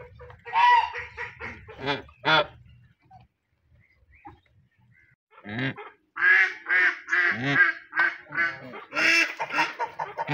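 Domestic geese honking in quick series of calls, falling quiet for a couple of seconds a few seconds in, then calling again steadily through the second half.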